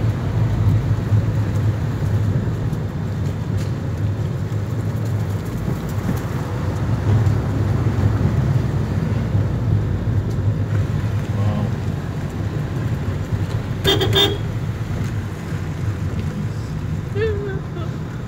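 Car engine and tyres rumbling steadily from inside the cabin while driving along a rough dirt track. A short, sudden sound with a tone to it cuts in about three-quarters of the way through.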